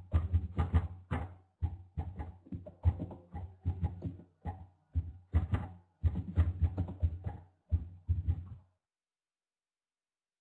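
An irregular run of muffled knocks or taps, a few a second, picked up by the microphone and stopping shortly before the end.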